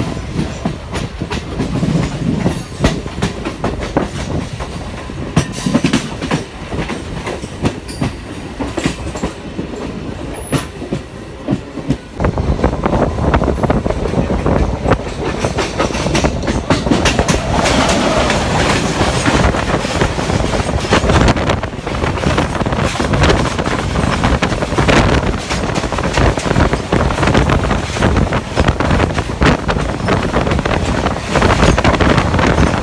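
Wheels of a moving MEMU electric train clattering over rail joints. From about twelve seconds in the noise grows louder and fuller, and in the second half an oncoming freight train of hopper wagons rushes past close alongside on the next track.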